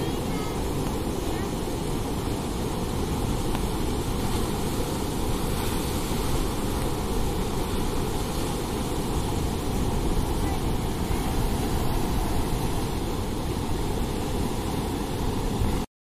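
Floodwater of the Bhima river pouring over a submerged bridge-barrage, a steady rushing noise with no let-up; the river is in flood at danger level.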